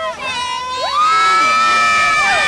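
Children screaming, with one long high-pitched scream held from about a second in.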